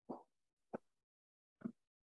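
Near silence broken by three faint, very short sounds: a soft one at the start, a sharp click about three quarters of a second in, and another brief one near the end.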